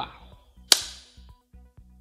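A single sharp hand clap about three-quarters of a second in, over faint background music.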